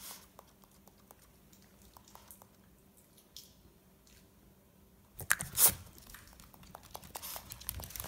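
Small dog grinding her teeth: a run of faint, quick clicks and scrapes from her mouth, with a louder burst of clicks a little past halfway.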